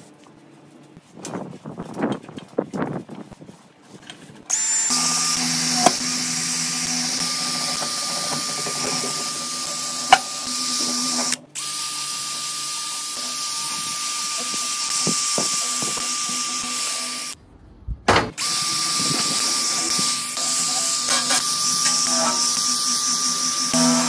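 Ryobi 18V ONE+ HP brushless compact hammer drill spinning a soft drill brush against a wet stainless-steel stove: a steady motor whine with a scrubbing hiss. It starts about four seconds in after a few seconds of a cloth rubbing on the burner, stops briefly twice and starts again.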